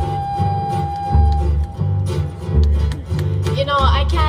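Hawaiian band of acoustic guitars, ukuleles and bass playing, with one long, steady held high note near high G that ends about a second and a half in. A voice with a bending pitch comes in near the end.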